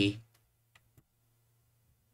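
The tail of a spoken word, then a few faint clicks of a computer mouse in a pause, over a faint steady low hum.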